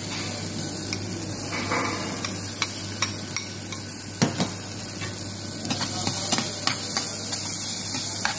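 Butter and garlic sizzling in a small stainless-steel saucepan on a gas burner, with a metal spoon clicking and scraping against the pan at irregular moments as the mixture is stirred.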